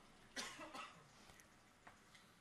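A single short cough about half a second in, over near-silent room tone.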